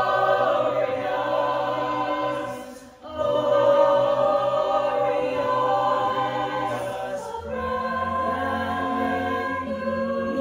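Mixed-voice a cappella choir singing sustained chords in close harmony. The sound breaks off briefly about three seconds in and then swells back, and a low bass part grows stronger about halfway through.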